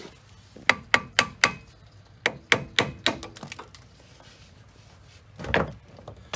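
Hammer tapping on the rusted-on 15 mm brake-line banjo bolt at the front brake caliper to break it loose. There are four quick sharp taps about a second in, then another run of about six taps, and a duller knock near the end.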